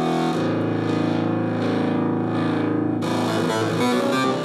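Distorted synthesizer chords played on a Nord Stage keyboard: held, wavering chords that give way to quicker-moving notes about three seconds in.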